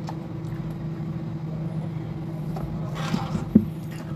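A steady low hum with no clear source, and a couple of light sharp knocks about three and a half seconds in as the speaker is handled and set down on the desk.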